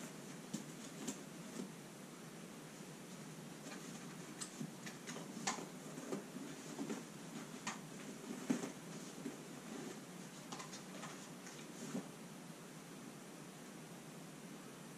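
Scattered light clicks and taps of drone batteries and foam being handled inside a hard plastic case, irregular and spaced apart, the sharpest tap about eight and a half seconds in.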